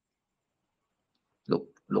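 Near silence, a pause in the talk, then a voice resumes speaking about a second and a half in.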